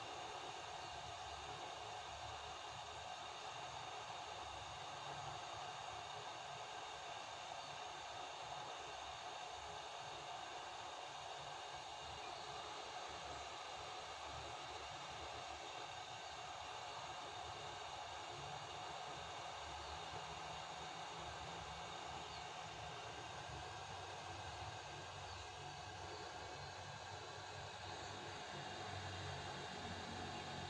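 Hot air gun running steadily, its fan and blowing air making an even hiss as it melts the tip of a hot-glue stick.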